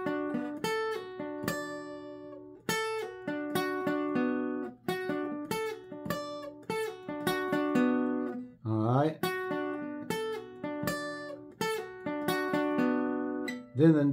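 Seagull steel-string acoustic guitar playing a picked single-note line high on the neck, with pull-offs: the song's piano part arranged for guitar. The notes ring separately, in short phrases that repeat every couple of seconds.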